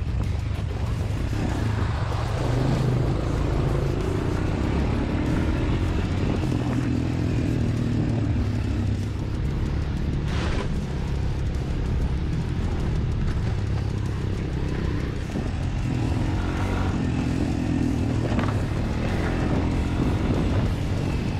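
Quad bike engine running steadily at low speed on a rough dirt track, with music over it.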